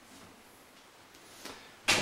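Quiet room tone, then a single sharp knock near the end, as a closet door is handled.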